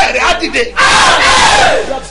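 A man laughing loudly and shouting. A short burst of voice is followed by a long, strained laughing cry of about a second in the second half.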